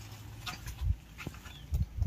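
Footsteps on a hard floor: three soft, low thuds about half a second to a second apart, with a faint click between them.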